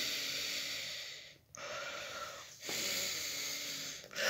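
A person breathing, three long breaths in a row.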